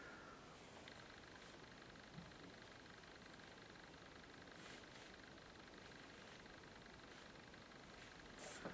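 Near silence: room tone with a faint steady hiss, and a faint high steady whine coming in about a second in.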